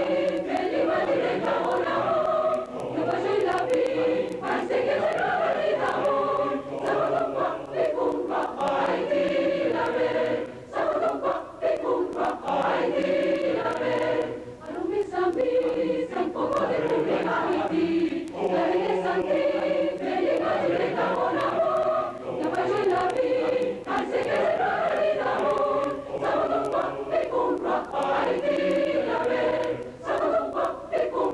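Large mixed choir of men and women singing a choral arrangement of a Haitian meringue, the voices running on in phrases with short breaks between them.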